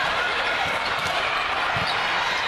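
Indoor volleyball rally: a few dull thuds from the ball being played and players hitting the court, over a steady murmur of crowd voices.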